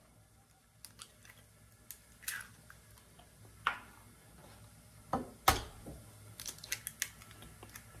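Eggs tapped on the rim of a bowl and their shells cracked and pulled apart: a few faint, sharp taps, the loudest a little past five seconds in, then small shell crackles near the end.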